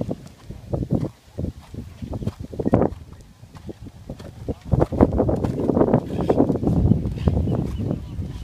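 Hoofbeats of a horse cantering on sand arena footing, a run of dull thuds that grows louder and denser from about five seconds in.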